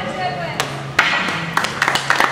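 Scattered hand clapping from a small group begins about a second in, a quick irregular patter of claps, after one sharp knock just before it.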